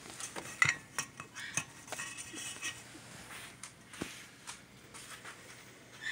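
Scattered light clicks, knocks and scrapes on a stainless steel bowl as a two-week-old toy poodle puppy is handled and settled in it, the loudest knock about half a second in.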